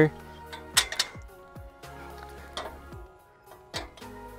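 Background music, with a few sharp metallic clicks and taps as metal camera-crane arm fittings are twisted on and slotted together.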